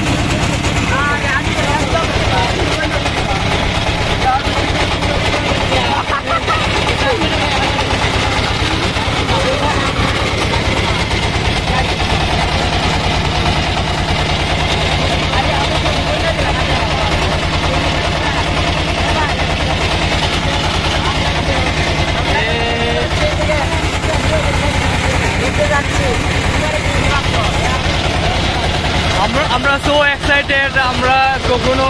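Engine of a wooden river boat running steadily with a fast, even chugging, with voices of passengers mixed in.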